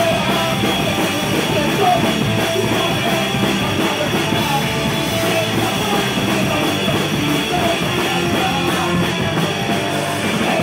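Punk rock band playing live: electric guitars, drum kit and a lead vocal sung into a microphone, loud and continuous.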